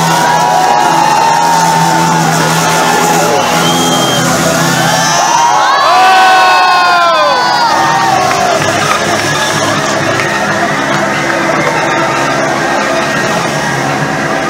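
Large crowd of spectators cheering and whooping, with many voices rising and falling together, loudest about six seconds in.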